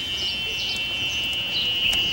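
Small birds chirping in garden trees, short high calls scattered through, over a steady high-pitched tone.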